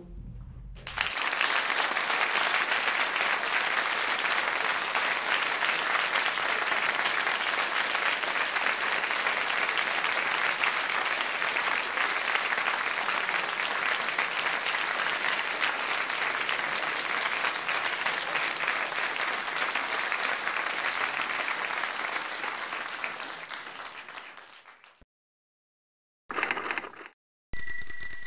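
Sustained applause, an even clapping that fades out about 24 seconds in. Near the end come a brief noise and then a short bell-like ding.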